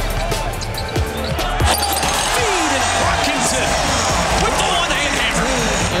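Basketball dribbled on a hardwood court during game play, with a few sharp bounces in the first couple of seconds, under background music and arena crowd noise.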